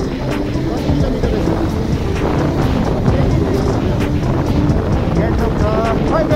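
Motorcycle running on the move, with wind on the microphone and a dense rumble broken by many small knocks and rattles. Background music plays underneath.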